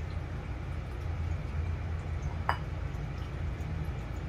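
Steady low machine hum, with a single short sharp clink about two and a half seconds in.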